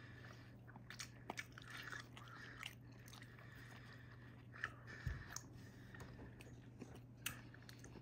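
Faint biting and chewing of a barbecue pulled-meat sandwich on a soft bun, with small wet mouth clicks scattered through. A steady low hum runs underneath.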